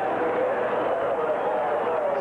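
Stadium crowd noise under a football TV broadcast: a steady murmur of many voices.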